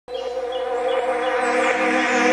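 Intro of a backing music track: a sustained chord that comes in suddenly and slowly swells, with a faint high tick repeating about three times a second.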